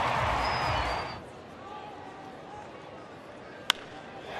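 Ballpark crowd noise that cuts off sharply about a second in and gives way to a quieter murmur. Near the end comes a single sharp crack of a wooden bat hitting the ball on a home-run swing.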